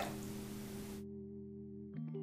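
Faint background music: a soft held chord of a few steady notes. A light room hiss under it cuts out about a second in.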